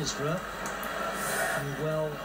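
A lull in the talk: a faint voice briefly just after the start and again near the end, over a steady background murmur.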